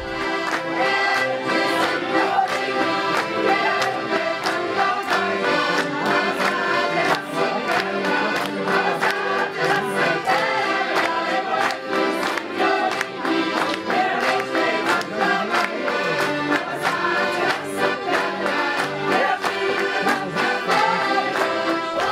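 An ensemble of accordions playing a tune together, with a steady beat.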